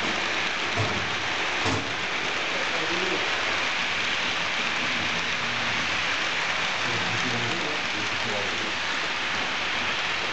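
Model trains running around a curve of model railway track: a steady rolling hiss of metal wheels on rails, with two short clicks about one and two seconds in.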